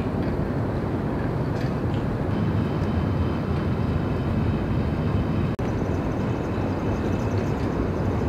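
Steady low rumble and hiss of outdoor city background noise, like distant traffic, broken by a brief dropout about five and a half seconds in.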